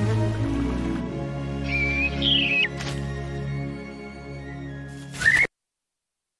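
Orchestral film soundtrack playing from a cartoon, with a whistling bird chirp about two seconds in and a sharp rising chirp just after five seconds; the sound then cuts off suddenly.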